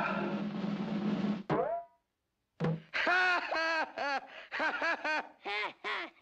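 Orchestral cartoon film score, broken off about one and a half seconds in by a quick falling glide sound effect as a cartoon cricket drops into a pool-table pocket. After a brief silence, a boy's loud, repeated cackling laughter in quick bursts.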